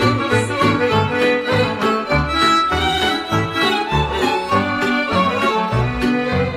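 Romanian folk party band playing an instrumental interlude between sung verses: a busy melody over a steady bass-and-chord dance beat, with no voice.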